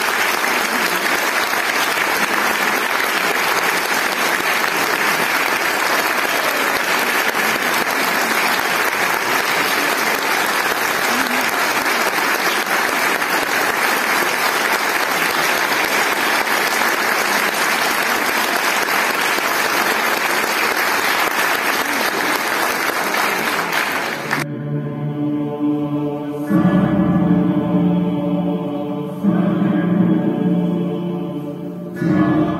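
A concert audience applauding steadily for about twenty-four seconds, cutting off suddenly. After the cut comes slow music of long held, chant-like voices.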